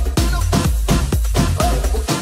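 Electronic dance music from a live DJ mix, a steady four-on-the-floor kick about two beats a second over heavy bass. The bass cuts out right at the end.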